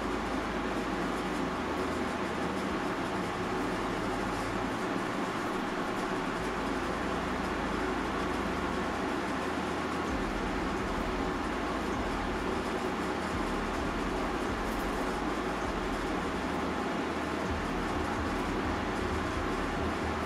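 Steady, even background noise with no distinct events.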